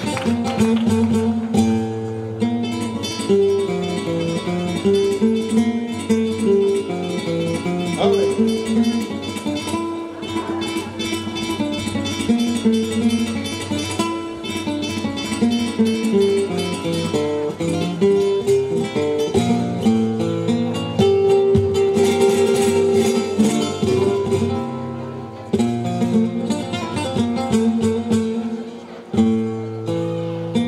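Solo flamenco guitar playing an instrumental passage (falseta): runs of plucked notes mixed with quick strummed chords, going on without a pause.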